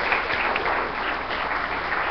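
Conference audience applauding steadily, many hands clapping at once.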